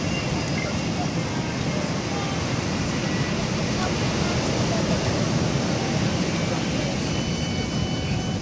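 Steady, even rushing background noise on a beach, heaviest in the low range, with faint thin high tones above it.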